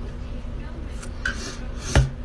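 Sucking through a plastic drinking straw from a cup: a few short, raspy slurps, ending in a loud thump.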